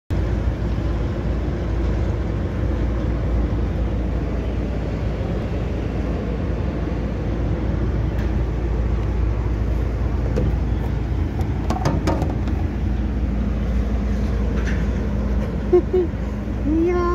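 Steady low rumble of outdoor city noise, traffic and a construction site below, with a few light clicks partway through.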